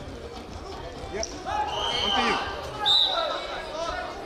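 Raised voices shouting from around the mat, then a short, sharp referee's whistle blast about three seconds in that restarts the wrestling bout.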